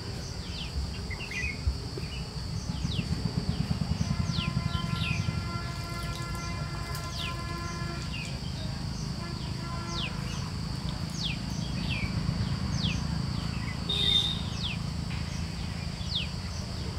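Outdoor ambience with a steady high-pitched insect drone and short downward-sweeping bird calls repeating about once a second, over a low steady rumble.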